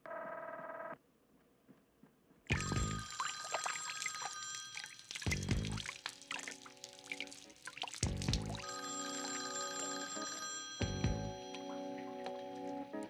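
A short burst of telephone ringing heard through a handset in the first second. From about two and a half seconds in, dramatic music with a heavy low beat about every three seconds plays, with a telephone bell ringing in two-second bursts under it: a call going unanswered.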